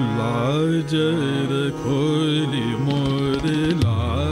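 Male Hindustani classical voice singing a melodic phrase in raag Abhogi Kanada, gliding and bending between notes. Tabla strokes come in near the end.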